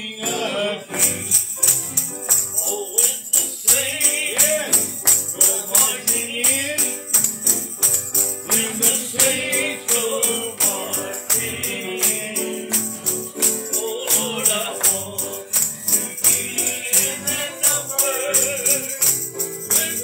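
Congregation singing a lively gospel song with piano accompaniment and a tambourine jingling on a steady beat.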